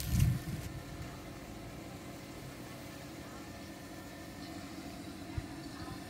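A steady, low engine hum, like a motor idling, with a short low rumble right at the start.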